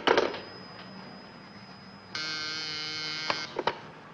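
A telephone receiver is set down on its cradle with a knock. About two seconds later a desk telephone buzzer sounds steadily for a little over a second, signalling an incoming call, followed by a few light clicks.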